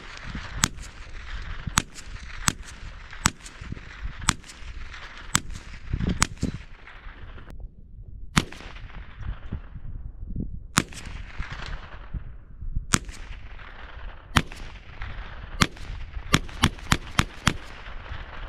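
A rifle fired repeatedly by one shooter: sharp single shots a second or two apart, each with a short echo, then a quick string of about five shots near the end.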